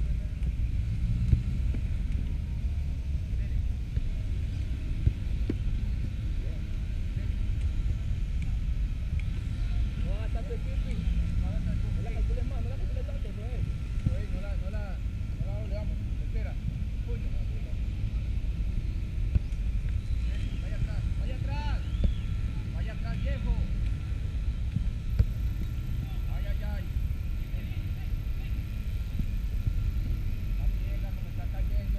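Steady low rumble of wind buffeting the microphone, with faint distant voices and a few sharp thuds.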